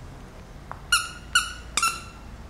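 Plush dog toy's squeaker squeezed by a dog's chewing: three short, high squeaks in quick succession, the last one doubled.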